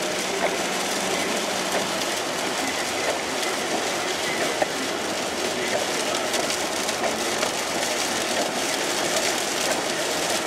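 Steady running noise inside a moving vehicle, likely a train, with small clicks and rattles scattered through it.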